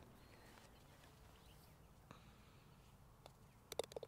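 Near silence, then near the end a short putt holed: a faint tap of the putter and a quick cluster of sharp clicks as the golf ball drops into the cup, running into rapid ticks.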